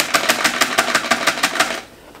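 A motor running with a rapid, even knock of about ten beats a second, which cuts off suddenly near the end.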